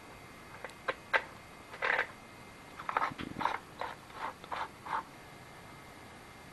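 Plastic clicks and knocks from handling a Lynxx 40 V battery chainsaw's plastic sprocket side cover as its knob is turned and the cover is lifted off. There are a few separate clicks at first, then a busier run of short clicks and rattles in the middle.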